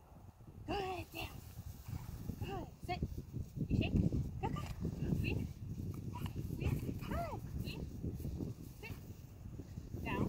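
A German Shepherd puppy whining and yipping in short, high calls that rise and fall, about eight of them, over low rumbling noise.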